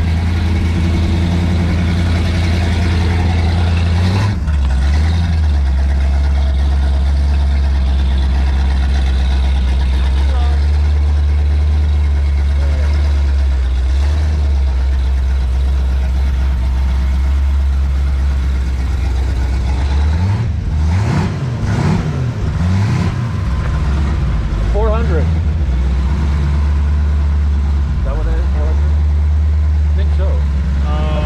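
Car engine idling steadily, revved up and down a few times about twenty seconds in.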